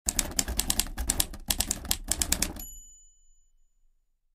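Typewriter sound effect: a fast run of key strikes for about two and a half seconds, with two short breaks, then a bell ding that rings out and fades.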